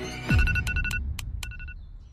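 A deep falling whoosh, the video's transition effect, then an electronic alarm beeping in quick clusters of short, high, steady beeps as the sleeper wakes.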